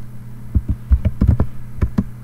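Laptop keyboard keys being typed: a quick, irregular run of about ten clicks starting about half a second in.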